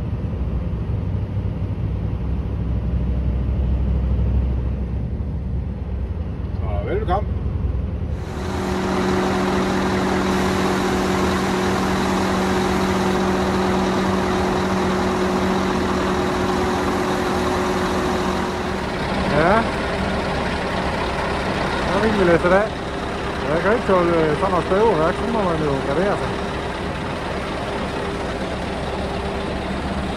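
Scania V8 truck engine running on the road, a low rumble heard in the cab. About eight seconds in it changes abruptly to a louder steady hum with a hiss as the tipper trailer is raised and grain pours out. In the second half the hum shifts slightly and a voice is heard a few times.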